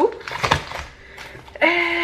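Groceries being handled on a kitchen counter: a plastic-wrapped package set down with a short knock and crinkle about half a second in. Near the end, a woman gives a drawn-out hesitant 'euh'.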